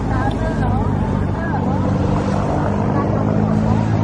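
Steady low hum of motor vehicle engines running, with voices in the background.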